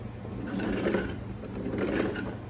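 Hard plastic wheels of a Little Tikes Push and Ride Racer rolling across a wooden parquet floor: a continuous rumble that swells and eases twice as the car is pushed.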